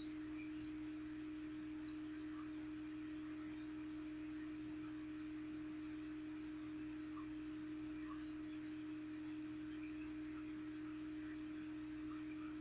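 A steady single-pitched hum that holds unchanged throughout, over faint hiss, with a few faint short chirps higher up.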